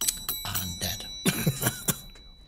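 A man laughing in a run of short breathy chuckles, with a faint steady high-pitched tone underneath.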